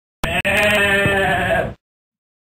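A sheep bleating: one wavering call about a second and a half long, broken briefly just after it starts.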